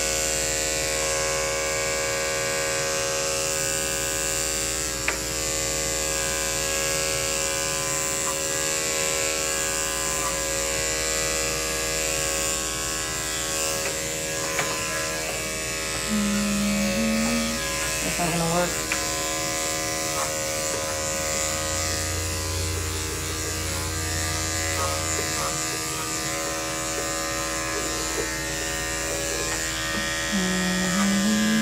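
Electric pet grooming clippers running steadily as they trim a dog's coat.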